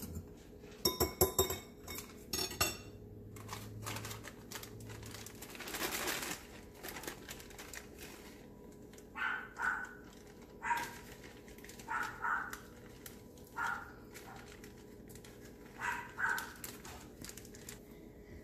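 Glass bowl and plate clinking a few times against the counter about a second in, the loudest sounds here, while raw chicken is handled; later a scattering of short, separate sounds at irregular intervals.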